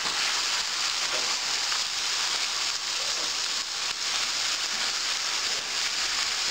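Chicken and vegetables sizzling in a pot as a steady hiss while they fry in oil, with a wooden spoon stirring them and now and then scraping against the pot.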